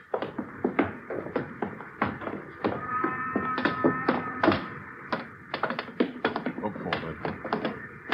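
Radio-drama sound effect of footsteps going up a ship's gangway and onto the deck: a steady run of taps and knocks, several a second. A faint held tone sounds for about two seconds near the middle.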